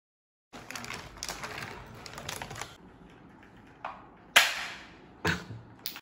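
A stretch of light, rattling clicks, then four sharp snaps spaced roughly half a second to a second apart. The loudest snap comes about four and a half seconds in and trails off briefly.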